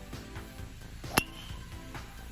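Golf driver striking a teed ball: a single sharp crack about a second in, with a brief ringing tail, over background music.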